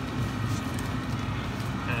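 Supermarket background noise: a steady low hum with no distinct events.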